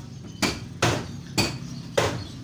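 Hammer blows on metal, four strikes about two a second, each with a short metallic ring.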